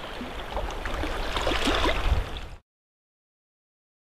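Shoreline ambience: sea water washing and gurgling against rocks over a low rumble, cut off abruptly about two and a half seconds in, followed by silence.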